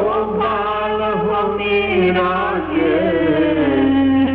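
Hindi devotional bhajan: a voice sings a winding, sliding melody over a steady low drone.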